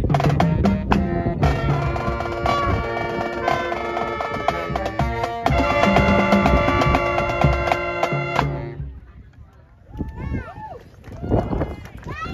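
A marching pep band of trumpets and other brass over a bass drum playing a loud, up-tempo tune that cuts off about eight and a half seconds in. Scattered voices follow in the last seconds.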